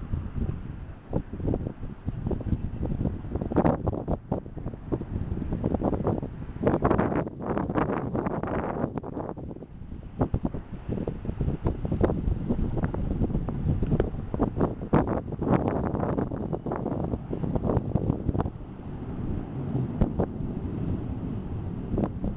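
Wind buffeting the camera's microphone in uneven gusts, a low rumble broken by sharp crackling spikes.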